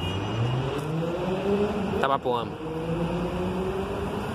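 Volvo diesel coach engine pulling away under acceleration, its note rising over the first two seconds and then holding steady.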